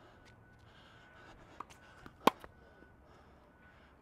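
A tennis ball being hit with a racket: one sharp pop a little over two seconds in, with a few fainter ticks shortly before and after it.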